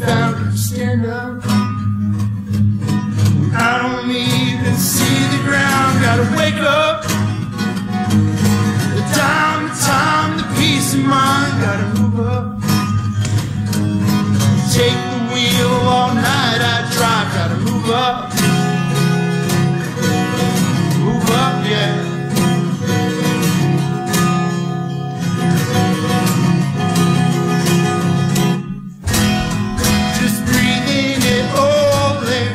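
A man singing over a strummed acoustic guitar in a live acoustic performance, with a brief break in the sound near the end before it picks up again.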